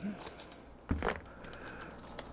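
Steel scissors working clear plastic laminating film: faint small ticks and handling noise, with one sharp knock from the scissors about a second in.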